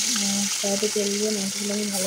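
A piece of rohu fish sizzling steadily in hot oil in a wok, with a voice talking over it.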